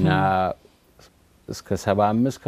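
A man speaking in an interview, with a pause of about a second in the middle before he carries on.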